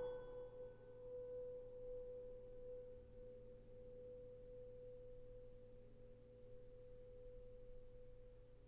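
A single piano note left ringing and slowly dying away, very quiet. Its brighter overtones fade within the first second, leaving one soft, pure-sounding tone.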